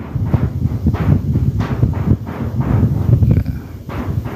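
Strong wind buffeting the microphone: loud, uneven low rumbling in gusts.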